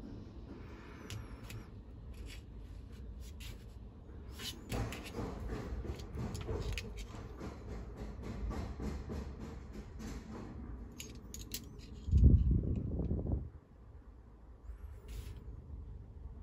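Handling noise of a small metal-cased resistor and a steel digital caliper: scattered light clicks and rustles as the parts and the caliper jaws are moved. About twelve seconds in comes a louder low thump lasting just over a second, the loudest sound.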